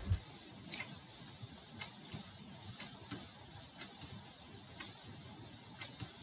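Faint, sharp ticks about once a second over low room hiss.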